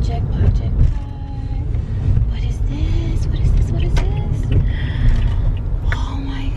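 Car being driven, heard from inside the cabin: a steady low rumble of road and engine noise.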